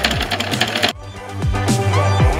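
Sewing machine stitching rapidly for about the first second, then stopping abruptly, over electronic background music with a steady beat that carries on alone.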